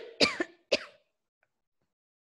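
A woman coughing: a quick run of sharp coughs that ends about a second in.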